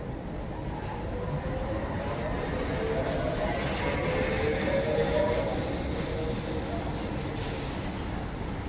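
Street traffic: a city bus passes, its drone swelling over a few seconds and fading, over a steady low traffic rumble.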